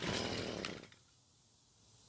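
A Stihl FS38 string trimmer's small two-stroke engine being pull-started: one short pull of under a second, the engine turning over rough and fast before it stops.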